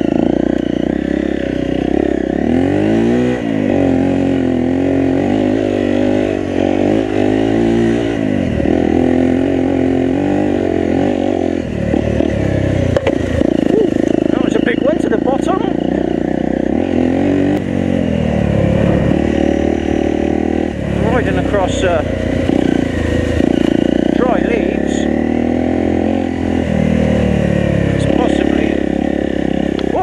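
Enduro motorcycle engine under way on a dirt trail, its revs rising and falling again and again with the throttle and gear changes, with occasional sharp knocks and rattles from the bike over rough ground.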